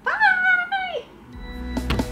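A woman's high-pitched, drawn-out 'bye', rising, held and falling off within about a second. Outro music then comes in about a second and a half in and grows louder.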